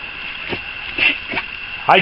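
Raccoon eating a piece of food on a wooden deck: three short, soft sounds about half a second apart, over a steady high-pitched hum.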